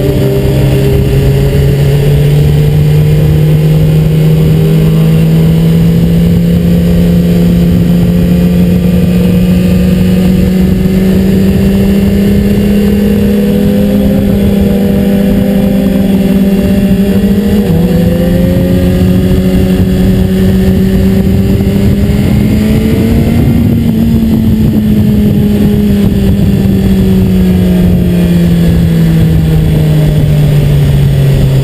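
BMW S 1000 RR's inline-four engine heard from a camera mounted on the bike, running at moderate throttle. Its note climbs slowly for most of the stretch, with a small step about two-thirds of the way through, then falls away near the end, over steady wind rumble on the microphone.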